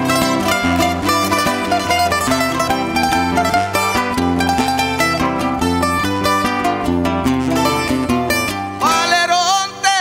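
Instrumental interlude of a Canarian punto cubano: acoustic guitars and a laúd playing a strummed and plucked accompaniment. Near the end a man's voice comes in with a long, wavering sung note.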